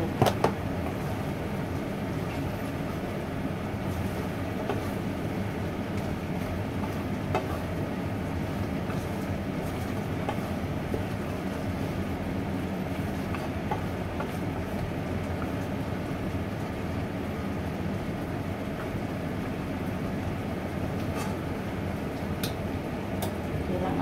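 Steady hum of a kitchen range hood fan, with a wooden spatula stirring food in a pan and now and then knocking against it.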